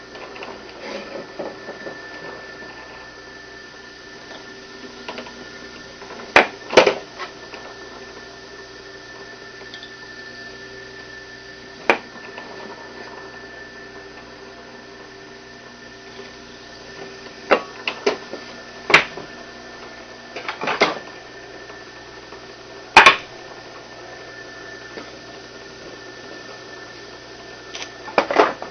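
Benchtop drill press running steadily while small pilot holes are drilled into a wooden block, with several sharp knocks scattered through.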